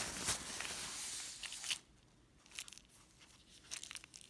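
A hand rummaging inside the zip pocket of a water-repellent fabric bag: fabric rustling for a couple of seconds, then a few faint clicks and taps as something is picked out.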